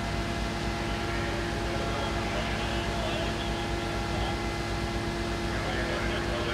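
Fire appliance's engine running steadily at a constant speed, a continuous drone with a low rumble, as the aerial platform's water jet is in use. Faint voices come through in the background.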